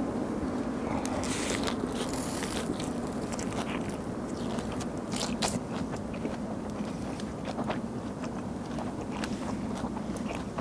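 A person chewing a big mouthful of lettuce wrap with grilled pork belly, pickled radish, raw garlic and seasoned bean sprouts, with many short crisp crunches over a steady low background hum.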